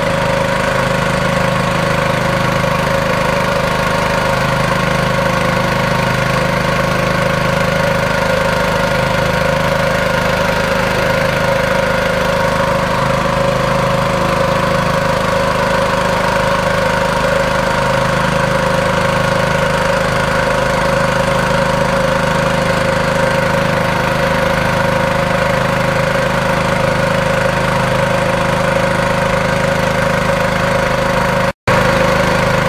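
The engine of a small outrigger river boat running steadily at cruising speed, a constant hum that keeps the same pitch throughout, with water rushing past the hull.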